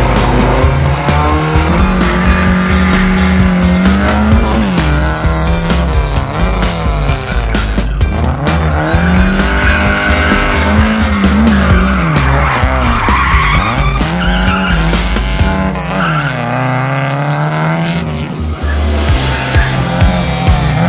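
A Lada saloon's four-cylinder engine revving hard, its pitch climbing and falling again and again every second or two as the car is thrown through a gymkhana course, with tyres squealing.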